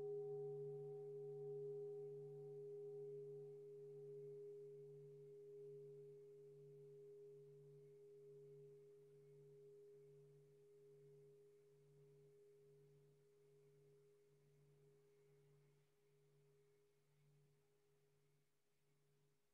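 A struck singing bowl ringing out: a low, slowly pulsing hum with steadier higher tones above it, fading gradually and dying away about ten seconds in.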